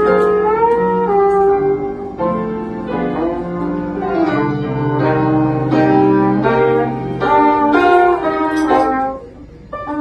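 Live Latin jazz: a trombone plays a melody line with slides between notes over piano accompaniment. The music drops quieter briefly about nine seconds in.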